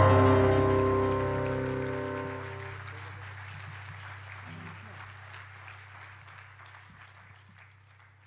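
The closing chord of a small acoustic ensemble with piano, cello and double bass, held and dying away over the first three seconds as the song ends. Faint applause follows and fades out.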